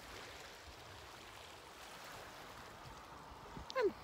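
Faint, steady wash of small waves lapping on a pebble beach, with a short knock near the end.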